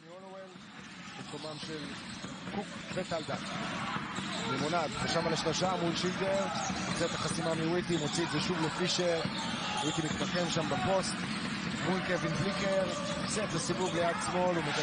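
Arena sound of a live basketball game: voices from the crowd with short, sharp sounds of play on the court mixed in. It fades in from near silence over the first few seconds.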